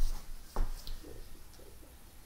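Two dull knocks about half a second apart, followed by a few faint low sounds.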